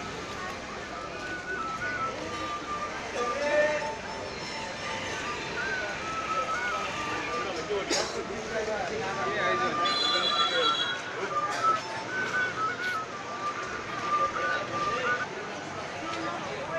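A simple melody played on a single instrument in long held notes that step up and down, heard over street crowd chatter.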